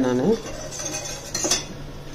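A steel spoon stirring a thick buttermilk curry in a stainless steel pot, scraping and giving a couple of light clinks against the pot.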